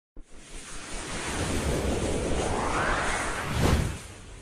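Swelling whoosh sound effect for an animated logo intro: a hissing noise builds up with a rising sweep, then ends in a quick, sharp whoosh just before the title letters arrive.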